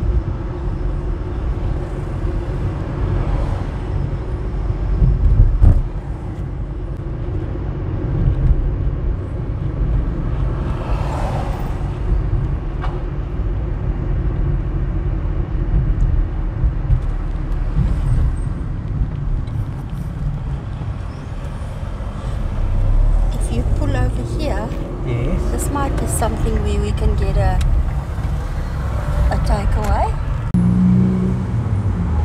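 A car driving along a town street: a steady low engine and road rumble, louder for a moment about five seconds in.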